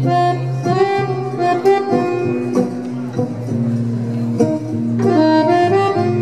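Accordion carrying a slow melody of long held notes over guitar and bass, in a live instrumental performance.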